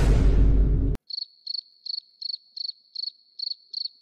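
A loud, deep boom sound effect for about the first second, cutting off abruptly. It is followed by an edited-in crickets sound effect, high chirps at one steady pitch, about three a second, the meme cue for awkward silence.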